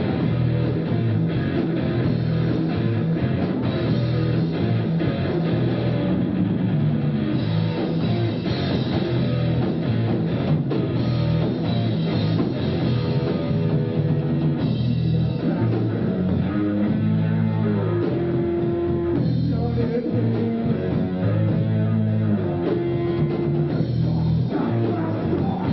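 Live rock band playing: distorted electric guitar, bass and drum kit going at full tilt in a steady, dense wall of sound. The recording has no high treble and sounds dull.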